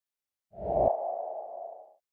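A short ringing sound effect: a low thump about half a second in with a mid-pitched ringing tone that fades over about a second and then cuts off.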